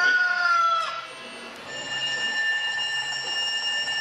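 Recorded rooster crow played through a smartphone speaker, its long held note trailing off and ending about a second in. After a short gap, a steady, high electronic tone of several pitches at once starts and holds without change.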